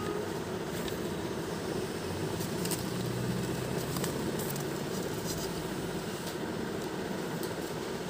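Paper pages of a printed test booklet being turned by hand, a few short rustles over steady background noise.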